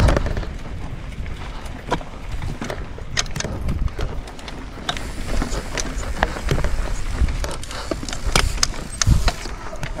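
Mountain bike riding over a dry dirt and rock trail, heard from the rider's camera: a steady rumble of tyres on the ground with frequent sharp clicks and knocks as the bike rattles over bumps.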